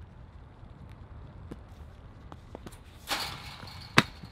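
Discus throw on a concrete circle: faint shoe scuffs and clicks as the thrower turns, a short rushing burst about three seconds in, and a sharp, loud click at the very end.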